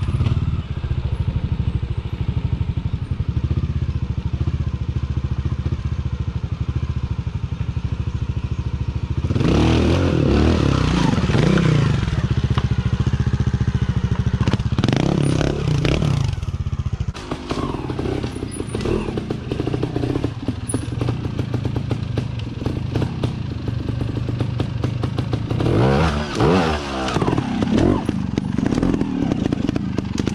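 Trials motorcycle engine idling with a steady low putter, then revved in short rising-and-falling bursts as the bike is ridden up over boulders, with clatter and knocks of the bike on the rock. After a break a little past halfway, an engine idles again and revs in another burst near the end.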